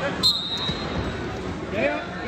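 A referee's whistle blast, a short sharp onset then a steady high tone lasting under a second, starting wrestling from the referee's position, followed by a few dull thumps of bodies and feet on the mat as the bottom wrestler comes up to his feet.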